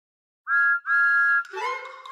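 Steam locomotive whistle sounding two toots, a short one and then a longer one, with a chord-like two-tone sound. Music starts straight after, near the end.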